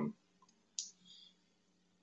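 Near silence, broken by one short, sharp click a little under a second in, followed by a faint brief hiss.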